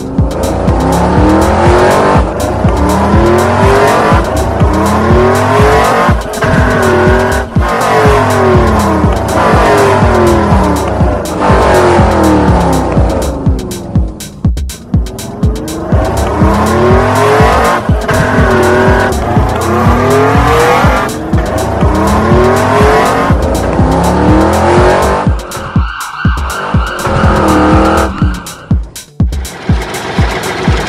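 Race car engine sound effect revving in repeated rising-and-falling sweeps about once a second, over background music with a steady pulsing beat.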